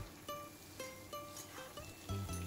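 Soft background music: a plucked-string tune of single notes, about two a second.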